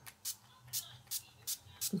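NYX Dewy Finish setting spray pump bottle misting, a rapid series of about five short sprays.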